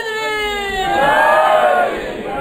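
A man's long, steady held shout through a PA system fades out, then from about a second in several men's voices call out together.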